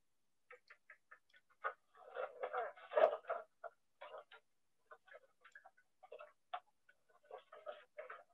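Faint, irregular knocks and clicks of a harnessed draught horse stepping backwards with a cart, denser for a moment about two to three seconds in.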